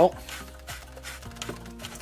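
Faint ticks and rubbing from a hand turning the micrometric fine depth-adjustment knob of a Bosch POF 1400 ACE plunge router, lowering the motor housing.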